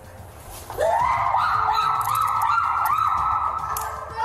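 A woman's long, high wail, rising at its start about a second in and then held with a wavering pitch for about three seconds.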